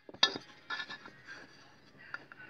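A sharp metallic click, then light scraping and small clinks, as the Vespa PX200's aluminium Autolube oil pump housing is worked by hand to free it from the engine case.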